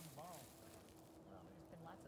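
Faint, distant people's voices talking, too low to make out words.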